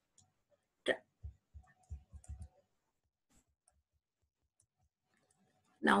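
A single sharp click about a second in, followed by a few soft low knocks, then quiet.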